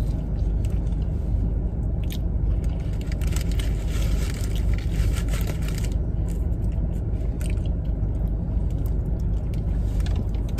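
Close-up chewing of a bacon, egg and cheese biscuit, with a crackly stretch of wrapper rustling and crunching in the middle, over the steady low rumble of an idling car.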